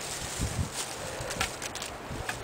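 Faint handling noise of galvanized steel pipe fittings being worked by hand, with paper-towel rustling and a few light clicks over outdoor background noise.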